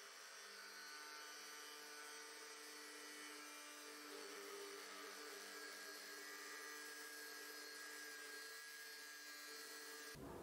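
Near silence: only a faint, steady electrical hum made of several fixed tones.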